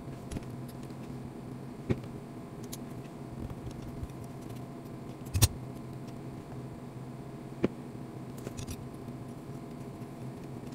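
Small metal tools and RC chassis parts being handled on a silicone workbench mat: a few sharp clicks and taps, the loudest about halfway through, over a steady low hum.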